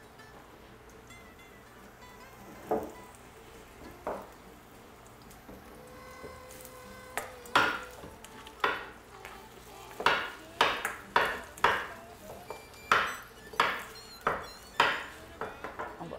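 Sliced onions being stirred in a wok with a faint sizzle. From about halfway, a run of sharp knocks, one or two a second, as a chef's knife slices courgettes against a wooden cutting board.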